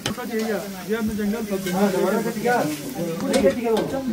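Sliced onions frying in oil in an aluminium karahi, sizzling as they are stirred, under voices talking throughout.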